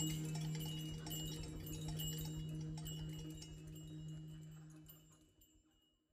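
Small hand-held percussion closing a drum solo: light, high, rapid ticking and ringing over a held low tone, the whole sound fading away to silence near the end.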